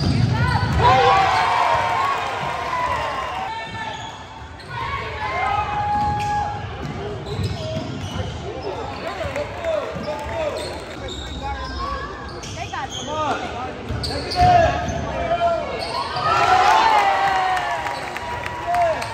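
Live game sound of a basketball being dribbled on a hardwood gym floor, with many short sneaker squeaks as players cut and stop, and scattered voices of players and spectators.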